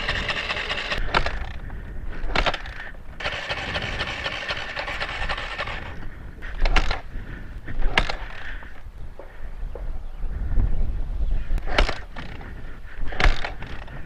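A dirt bike running for about the first six seconds, then a scatter of knocks and scrapes as the bike is laid down on its side.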